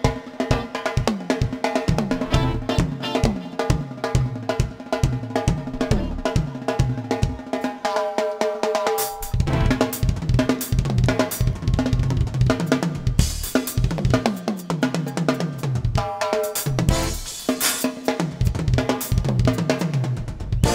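Live drum kit solo: fast kick, snare and rimshot strokes with hi-hat and cymbal crashes, over a sustained pitched backing.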